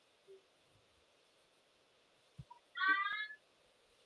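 A short, high-pitched animal cry, slightly rising, about three seconds in, after a few seconds of quiet.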